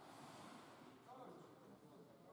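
Near silence with faint, indistinct voices talking.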